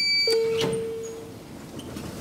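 An elevator hall call button gives a short high beep as it is pressed. Then a single lower chime rings and fades over about a second, signalling the car's arrival as the doors begin to open.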